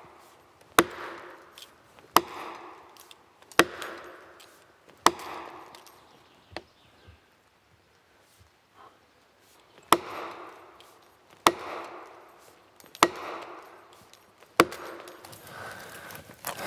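The back of an axe striking plastic felling wedges driven into the back cut of a large spruce: eight sharp knocks about a second and a half apart, four, then a pause of about five seconds, then four more. The wedges are being hammered to lift a back-leaning tree.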